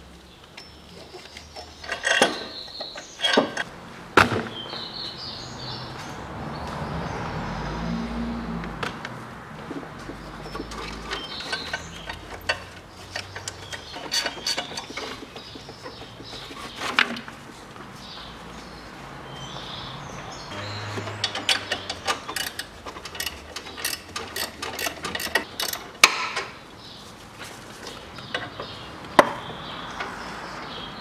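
Hand tools and metal engine parts clicking and clanking while the pulleys and alternator belt are fitted, with scattered sharp knocks and, past the middle, a quick series of ratchet-like clicks.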